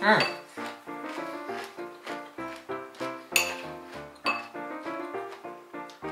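Background music, with a spoon clinking against a bowl a few times, the sharpest clinks about three and four seconds in.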